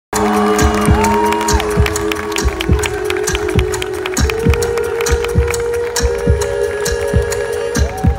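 Live pop music from a concert stage: a steady kick-drum beat, about two and a half a second, with hi-hat ticks under long held notes.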